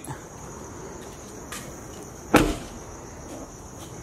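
A pickup truck door shut once with a solid thud about two and a half seconds in, a fainter click a second before it, over steady chirping of crickets.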